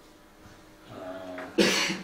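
A single loud cough about one and a half seconds in, preceded by a faint murmur of voice.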